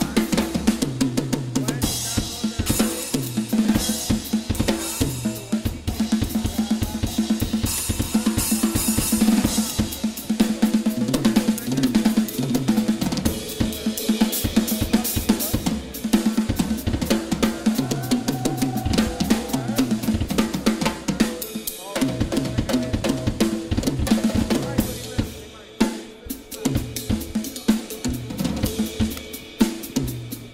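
Drum kit played with sticks in a busy jazz groove: snare, bass drum, hi-hat and Anatolian cymbals, with strokes packed closely throughout. It gets briefly quieter a little past two-thirds of the way through.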